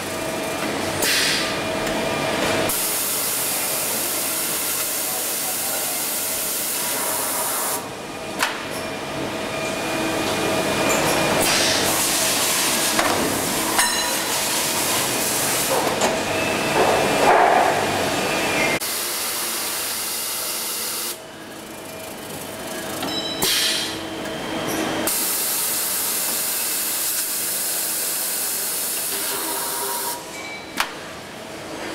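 Automatic bar-handling machine (tube unloader) running: a loud, steady hiss that cuts off and comes back abruptly several times, with a few sharp clicks and knocks.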